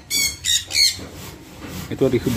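A bird calling: about three short, high squawking calls in quick succession in the first second, then quieter.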